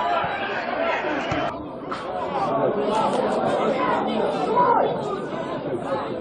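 Several people's voices talking and calling over one another, a general chatter of spectators and people around a football pitch. The sound changes abruptly about a second and a half in, as one recording gives way to another.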